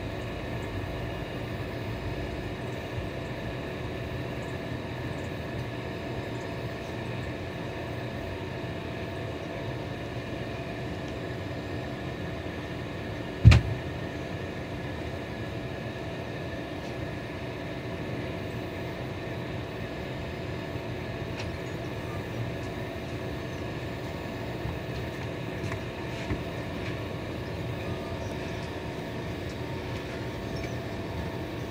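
Indian Railways sleeper-class passenger coaches rolling slowly past on the adjacent track, a steady rumble with a few light clicks, heard from inside a train through the window glass. About halfway through comes a single sharp, loud thump.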